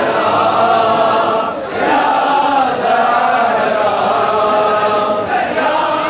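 Large crowd of men chanting a Shia mourning lament in unison, in long drawn-out phrases, with short breaks about a second and a half in and again near the end.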